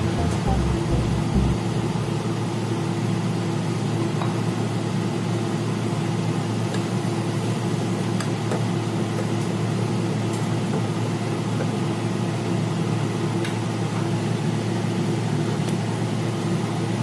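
Steady machine-like hum with a constant tone, with a few light clicks of a spatula stirring chicken pieces in a non-stick wok.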